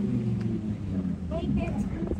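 Lamborghini Huracán STO's V10 engine running at low revs as the car rolls slowly along the street, a steady low engine note.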